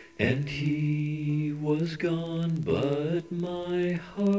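A man's voice chanting in long held notes, with a brief swoop down and back up in pitch about two-thirds of the way through.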